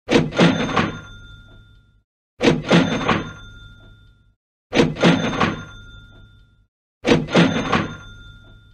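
Cash register "ka-ching" sound effect played four times, about every two and a half seconds: each time a quick rattle of clicks and then a bell ring that fades away, marking a payment coming in.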